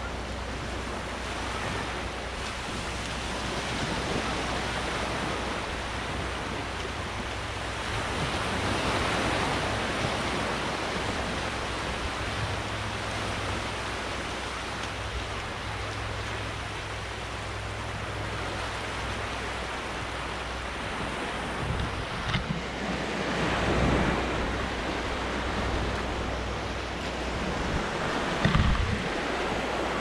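Small waves washing on a shallow sandy shore in a continuous hiss that swells and fades a couple of times. Wind rumbles on the camera microphone, with a few sharp buffets near the end.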